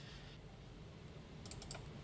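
A few faint computer mouse clicks, clustered about one and a half seconds in, over quiet room tone.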